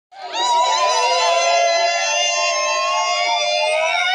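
A group of voices holding one long, high sung note together, with a slight waver.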